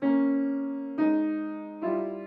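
Grand piano: three chords struck about a second apart, each left to ring and fade, a phrase that starts on a C-rooted chord and fans outward.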